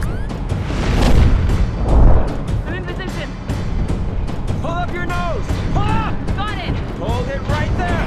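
Sci-fi action soundtrack: dramatic music over a deep rumble, with two loud booms about one and two seconds in and many sharp clicks and crackles throughout. From about three seconds in, a string of short pitched sounds rises and falls.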